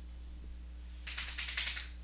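A short burst of rapid keyboard clicking, about a second in, over a steady low electrical hum.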